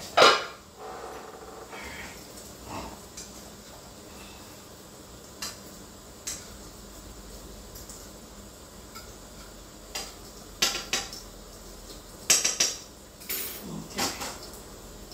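Cookware clattering: a pot lid and a spoon clinking against pans while food is stirred. There is a loud clank just after the start, a few scattered clinks, and a quick run of clinks near the end.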